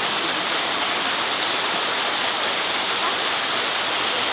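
Steady rushing of running water, an even hiss with no breaks.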